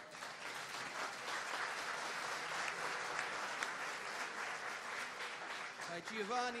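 Audience applauding: steady, dense clapping that builds over the first second and dies away near the end.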